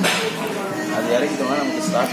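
Restaurant din: people talking over background music, with a sudden sharp swish right at the start.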